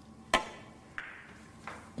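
Billiard cue tip striking a Russian pyramid ball: one sharp, loud crack about a third of a second in, then a second, fainter click of ball against ball about a second in.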